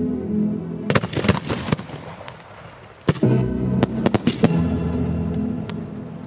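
Fireworks going off: a quick run of sharp bangs about a second in, then another run from about three to four and a half seconds. Orchestral classical music plays under them and fades toward the end.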